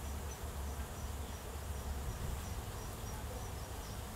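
An insect chirping in short, high, evenly spaced pulses, two or three a second, over a steady low rumble.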